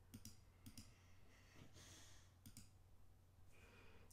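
Near silence with a few faint computer mouse clicks, coming in quick pairs: two pairs in the first second and another pair about two and a half seconds in.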